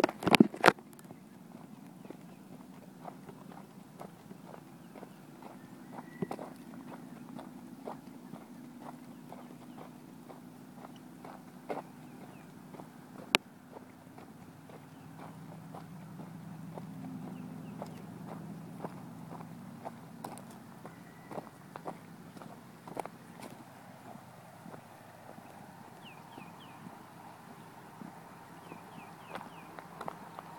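Footsteps crunching on a dirt and gravel road at a walking pace, irregular short crunches over a low steady background, with a few loud knocks in the first second.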